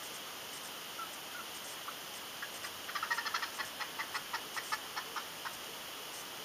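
An animal call, probably a bird's, over a steady outdoor hiss: a quick run of short chirping notes about halfway through that slows to a few separate notes a second and stops.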